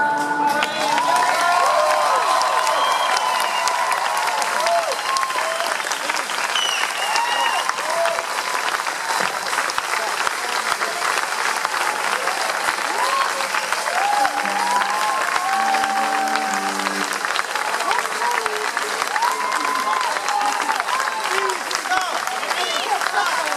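A concert audience applauding and cheering after a song ends, with voices calling and whooping over steady clapping.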